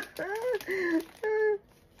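A woman's voice giving short, bending, high-pitched laughing sounds that break off about a second and a half in.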